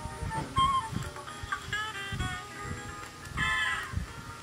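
A LeapFrog Shakin' Colors Maracas toy playing short electronic musical tones through its small speaker, one after another in a melodic pattern, the strongest a little after three seconds in. Low knocks run under the tones.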